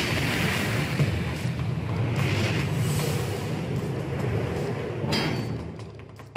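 Steady low rumble with a rushing noise over it, the sound of a huge mining haul truck driving along a dirt road. There is a short swell about five seconds in, then it fades near the end.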